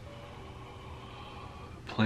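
Faint room tone in a small closet: a steady low hum with no distinct sound events. A man's voice starts right at the end.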